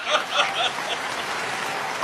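Audience applauding, steady clapping that follows the punchline of a comic verse.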